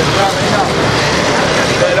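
Street traffic, with a motorcycle passing close by. A vendor's shouted call is heard briefly near the start.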